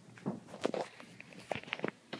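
Several soft thuds and rustles of movement, about six in two seconds, like steps and shuffling close to the microphone.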